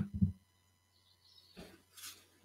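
Quiet video-call audio: a low steady hum with a few faint short knocks in the first half-second and a soft rustle about a second and a half in.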